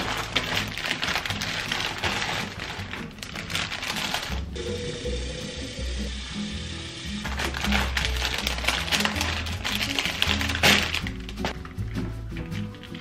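Background music with a steady bass beat, over the crackle and rustle of cellophane and paper wrapping being handled as bouquets of tulips are unwrapped. The rustling comes in two stretches, with a lull in the middle.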